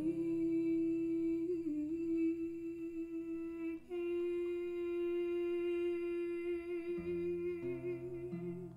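A woman sings two long wordless held notes, with a brief break between them about four seconds in and a slight vibrato near the end. A classical guitar plays softly beneath her voice.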